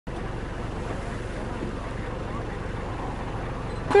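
Steady low rumble and hiss of a safari vehicle's engine idling, with wind on the microphone. Right at the end a voice begins a loud, rising 'Wow'.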